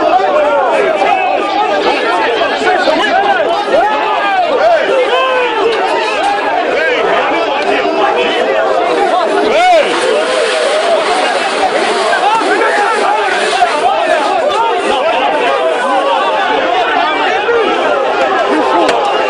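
A large crowd of men shouting and yelling over one another, many voices at once, during a scuffle with riot police. One sudden loud sound stands out about halfway through.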